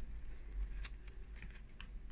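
Faint, scattered small clicks from working a hot glue gun against a craft-foam leaf while hot glue is applied.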